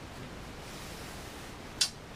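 Faint steady hiss, with one sharp click near the end as the go-box front panel is turned round and handled on the bench.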